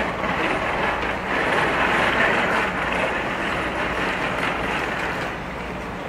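A steady low machine hum under a noisy rush that swells and eases.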